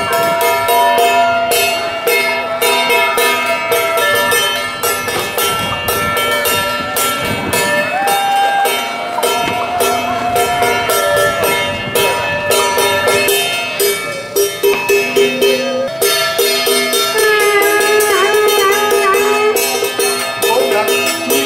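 Traditional temple ritual music: a pitched melody in long, wavering notes over fast, steady clanging percussion of bells and gongs.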